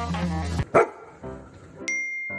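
Background music cuts off and a dog barks once, loudly, followed by a few quieter dog sounds. Near the end a steady high electronic tone starts and holds.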